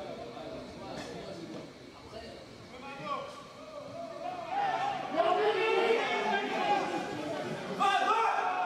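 Several voices calling and shouting at once at an amateur football match, with low chatter at first and much louder overlapping shouts from about halfway through.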